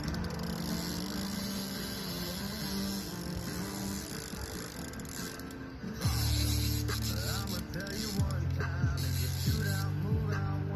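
Music with held low notes; about six seconds in it gets louder, with a deep bass line that slides between notes.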